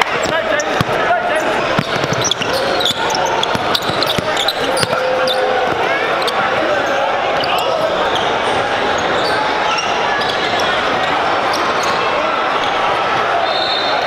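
Live sound of an indoor basketball game: a basketball bouncing repeatedly on a hardwood court amid a steady hubbub of players' and spectators' voices echoing in a gym.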